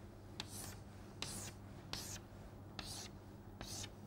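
Chalk drawing straight lines on a chalkboard: about five strokes, each a tap of the chalk followed by a short scratchy hiss, over a low steady hum.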